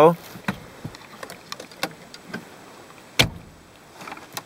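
Light scattered clicks and knocks of handling at the truck's steering column and ignition key, with one sharp, louder click about three seconds in; the engine is not yet running.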